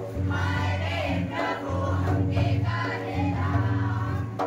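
A group of voices singing a Christian folk dance song together in chorus, over a steady low accompaniment.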